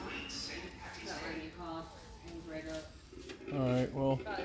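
Indistinct voices talking in the background, with a louder, low-pitched voice near the end.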